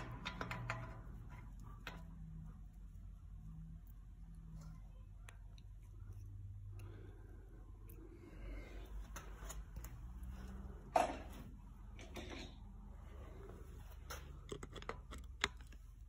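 Faint, scattered metallic clicks as a VW Type 1 distributor drive gear is turned by hand and settles down into its bore in the engine case, with two sharper clicks later on, over a low steady background hum.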